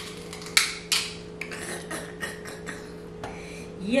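King crab leg shell cracked and snapped apart by hand: a series of sharp cracks and crunches, the loudest about half a second and one second in, then smaller crackles.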